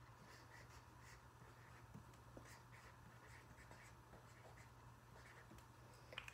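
Faint strokes of a marker writing on a paper worksheet, a string of short scratches.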